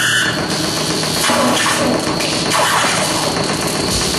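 Harsh electronic noise from circuit-bent hardware played live: a loud, dense wall of hiss and squeal whose texture shifts abruptly every second or so.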